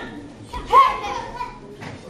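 Children's high-pitched voices calling out in a large hall, with one loud call a little under a second in.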